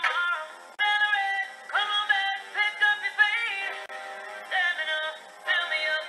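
A pop song playing, a sung lead vocal in short phrases over it, with almost no bass.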